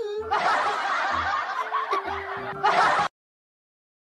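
Laughter over a steady backing beat, cutting off abruptly about three seconds in.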